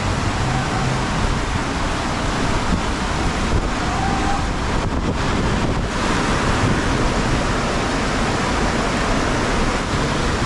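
Wind buffeting the microphone: a steady rushing noise with a restless low rumble underneath.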